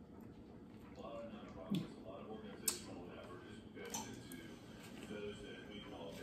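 A man chewing a bite of sandwich, with a few brief sharp clicks about two and three seconds in, over faint talk in the background.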